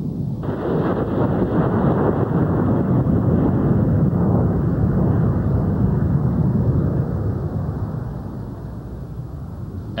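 Jet noise from a formation of U.S. Air Force F-16 fighters flying past: a loud, deep rushing rumble that swells over the first few seconds and then slowly fades.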